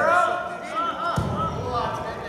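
Spectators and coaches shouting encouragement at a wrestling match, drawn-out calls overlapping, with a single dull thud about a second in.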